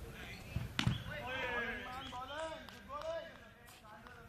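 A single sharp knock of a cricket ball being struck, a little under a second in, followed by a man's voice calling out for about two seconds.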